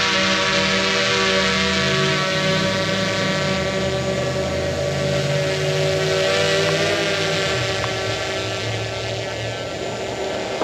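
Small quadcopter drone's propellers whining in flight: a steady, many-toned buzz over a high hiss as it hovers and then climbs. The sound grows fainter near the end as the drone rises away.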